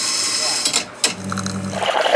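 Espresso-bar machinery at work: a loud hissing whir to begin, a few sharp clicks just before a second in, then a steady low hum as the espresso machine runs.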